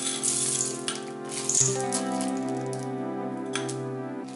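Chocolate chips poured from a glass bowl, rattling into a stainless steel mixing bowl in several short clattering spurts, the loudest about halfway through. Background music with held notes plays throughout.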